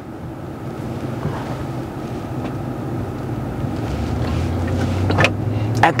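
Engine and road noise heard from inside a car's cabin, building steadily as the vehicle accelerates, with the low engine note growing stronger in the second half.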